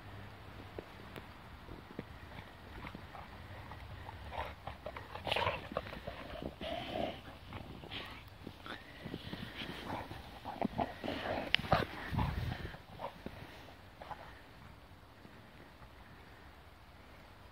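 American Bulldog nosing and digging in snow: a run of short, irregular sniffs and snow scrapes, busiest from about four seconds in and loudest around twelve seconds in.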